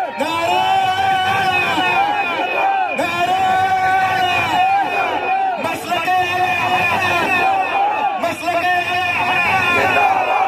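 A man singing an Urdu devotional kalam in long, held, melismatic phrases that break about every two to three seconds, over the noise of a crowd.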